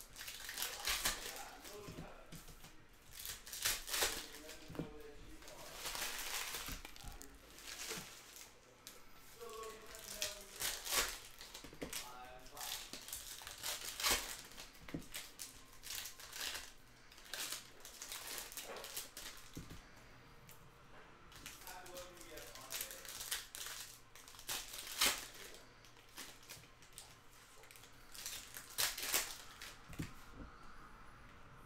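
Foil trading-card pack wrappers being crinkled and torn open by hand, in a run of irregular sharp crinkling rustles.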